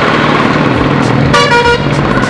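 Road traffic noise with a vehicle horn honking once, briefly, about one and a half seconds in.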